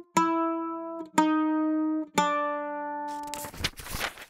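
Mandolin playing three single plucked notes about a second apart, each ringing out and fading, stepping down in pitch.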